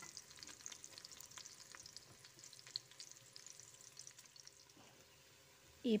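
Hilsa roe fritters shallow-frying in oil in a pan on medium heat: a faint steady sizzle with scattered small crackles and pops, growing quieter toward the end.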